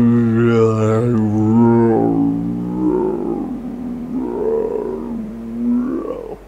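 A man's voice stretched into a deep, slowed-down drone, speech imitated in slow motion. One long held note sinks slowly in pitch for about two seconds, then breaks into weaker, wavering sounds.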